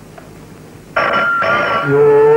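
Telephone ringing: a loud electric ring starts suddenly about a second in, in two short bursts.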